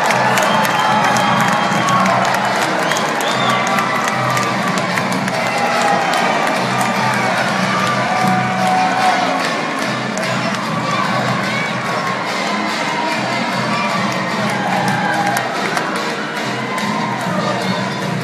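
Basketball crowd cheering and shouting, many voices yelling at once over dense clapping, celebrating a game-winning buzzer-beater.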